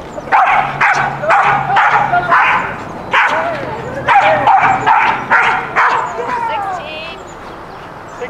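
A dog barking about ten times in quick, sharp succession, then trailing off into a falling whine near the end.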